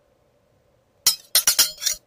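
A quick run of about five sharp, bright clinking impacts within a second, starting about a second in and cutting off suddenly.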